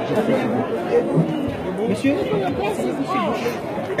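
Many people talking at once, voices overlapping into a steady chatter.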